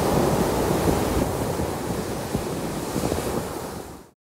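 Sea waves breaking and washing over a pebble beach, a dense steady surge that eases and fades out near the end.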